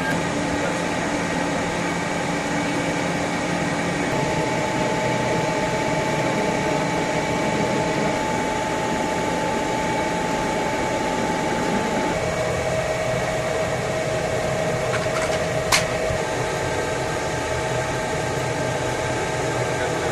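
Steady machine-like whooshing noise, fan-like, with faint steady hum tones that shift in pitch a couple of times. One sharp click about three-quarters of the way through.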